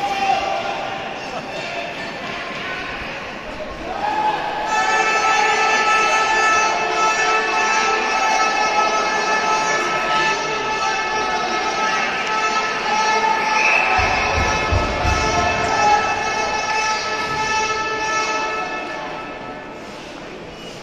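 Music over an ice rink's public-address system, starting about four seconds in and fading out near the end, echoing in the large hall. Voices come before it, and a few low thumps sound partway through.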